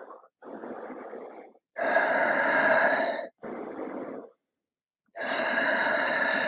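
A person breathing deeply and audibly while holding a stretch: long breaths, each lasting a second or more, alternating quieter and louder, with short silent pauses between them.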